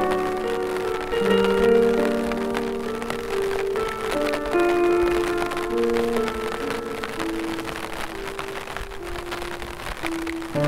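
Piano music, one held note or chord giving way to the next every second or so, over a steady patter of rain.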